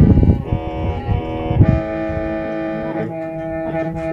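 Hmong qeej, a bamboo free-reed mouth organ, playing a slow kho siab (lonely-heart) tune: sustained reedy chords of several notes held together, shifting a few times. A few low bumps sound under it, the strongest right at the start.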